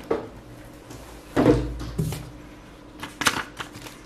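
Cardboard packaging being handled and set aside on a table: two dull knocks about one and a half and two seconds in, then a short crisp rustle near the end.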